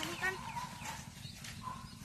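Young children's high-pitched voices, a short call at the start and another brief one near the end, quieter in between.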